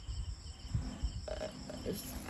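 Crickets chirping, a faint high pulsing that carries on steadily, with scattered low handling bumps and a faint low voice near the end.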